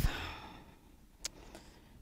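A woman's breathy sigh at the start, fading out within about half a second, followed by a quiet pause with one faint click.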